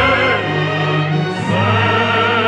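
Orchestral song with a choir singing long held notes over sustained low accompaniment.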